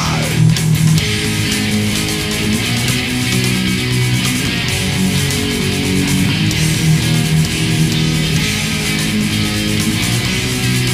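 Death/thrash metal recording: distorted electric guitar riffing over bass in a steady, dense wall of sound, with no vocals.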